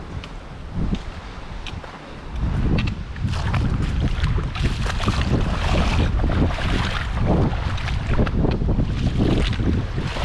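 Wind buffeting the microphone, growing much louder about two seconds in, over the steady rush of shallow creek water running over a rocky bed.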